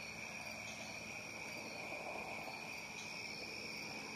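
Crickets trilling steadily in the background, one continuous high-pitched note that does not change.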